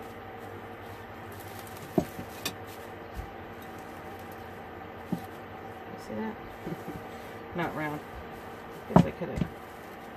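Ceramic rolling pin knocking and rolling on a wooden cutting board as corn tortilla dough is rolled out: a few sharp knocks, the loudest about nine seconds in, over a steady low hum.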